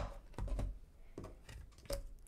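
Tarot cards being handled and laid down on a wooden desk: a sharp tap at the start and another near the end, with softer taps and rustles between.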